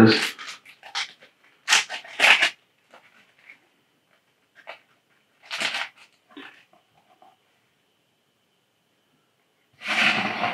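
A small clear plastic zip bag being handled and opened, giving a few brief rustles: a close pair about two seconds in and another near six seconds, with faint small clicks between.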